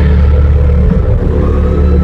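Loud live band music through an arena PA: a steady, heavy low bass drone, with the singing briefly dropping out between phrases.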